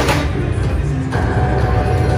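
Wonder 4 Buffalo Gold slot machine starting a spin: a sharp burst of sound as the reels set off, then the machine's steady electronic spin tones from about a second in, over a constant low rumble.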